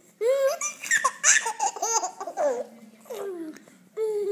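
A baby laughing and squealing: a run of quick, high, rising laughs lasting about three seconds, then trailing off.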